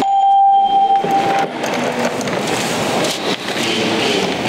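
Electronic voting system signal in an assembly hall: one steady beep lasting about a second and a half, marking the vote, over continuous noise of the hall.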